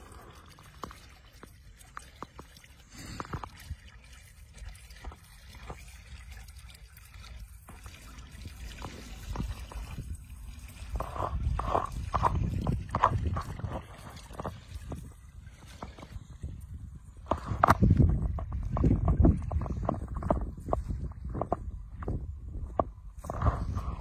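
Water gurgling and trickling as it drains down a small hole in a shallow, reedy pool. A deeper rumble grows louder about halfway through and again in the last third.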